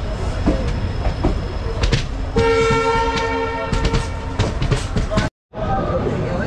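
Train running with clatter and clicks from the rails, and a train horn sounding one steady, multi-note blast for about two seconds in the middle.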